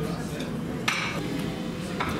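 Background hubbub of indistinct voices in a pub bar, with one short clink about a second in.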